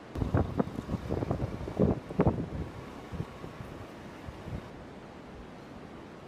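Wind buffeting the microphone in gusts for the first two and a half seconds, then easing to a steady low rumble.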